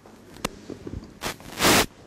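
Handling noise on a microphone as it is passed over for the next speaker: a sharp click about half a second in, then rough rustling scrapes, the loudest a short burst near the end.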